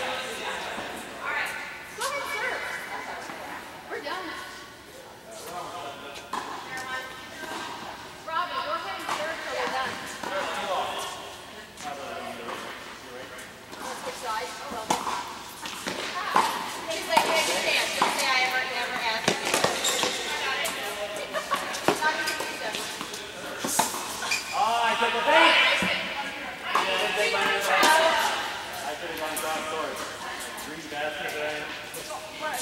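Tennis balls struck by rackets and bouncing on an indoor hard court, the sharp hits echoing in the large hall, over players' voices.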